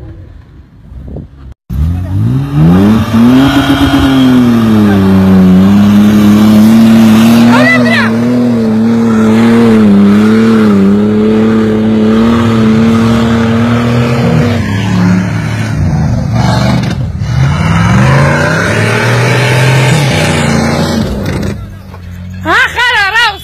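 Off-road SUV engine revved hard, starting suddenly a couple of seconds in and held at high revs with a wavering pitch for about twelve seconds, then dropping and rising again near the end as the 4x4 claws up a dusty dirt slope.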